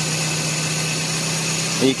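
Car engine idling with its alternator recharging a 12-volt ultracapacitor pack, a steady hum under an even hiss. The alternator's draw on the engine is dropping off as the pack comes up toward 14 volts.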